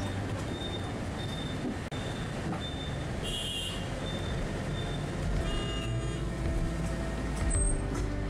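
Street traffic heard from a moving vehicle: a steady rumble of engines and road noise. A faint, high short beep repeats about every half second through the first half.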